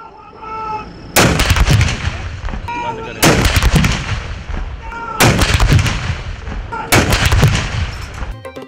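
Artillery field guns firing a ceremonial 21-gun salute: four heavy shots about two seconds apart, each followed by a long rolling echo.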